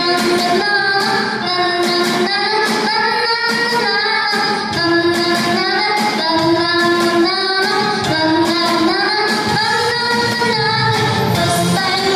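A young girl singing a Polish song into a microphone, holding long notes, over an instrumental accompaniment with a steady beat.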